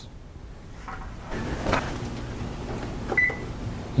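Timer beeping once, a short high tone near the end, over a low steady hum, with a brief rustle or knock shortly before. The beep signals that the bread's baking time is up.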